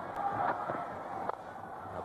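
Crowd noise at a cricket ground, a steady hubbub as the ball runs away towards the boundary, with a faint knock a little past the middle.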